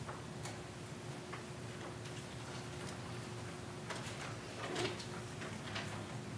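Scattered light taps and clicks from a group of people moving about on foot, a few every second or two at irregular times, over a faint steady hum.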